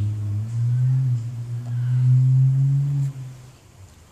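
A man's low, closed-mouth thinking hum, "hmmm", held for about three and a half seconds with a slight waver in pitch.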